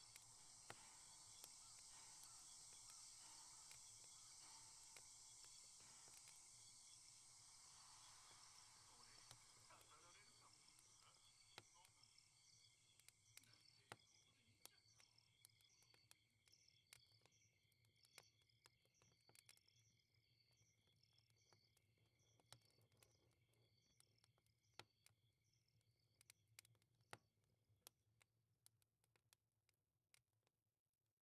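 Faint crackling of a small wood fire in a fireplace, irregular pops and snaps over a soft hiss, with a faint regular high chirping behind it. The whole ambience fades away gradually toward the end.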